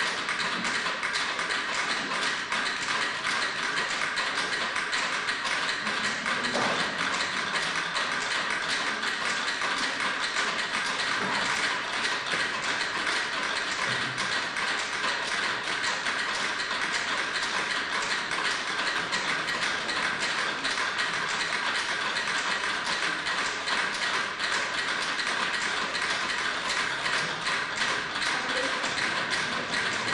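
Rapid, steady mechanical clicking, many clicks a second, like a ratchet.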